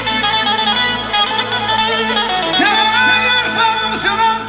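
Live wedding band music with an accordion playing sustained melody. A man's amplified voice comes in singing about two-thirds of the way through.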